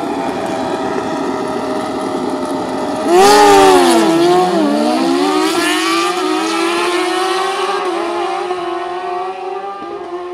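Two drag-racing motorcycles, one of them a BMW, held at high revs on the start line, then launching about three seconds in with a sudden loud rise. The engine pitch dips at the launch, then climbs stepwise through the gears as the bikes pull away down the strip and fade.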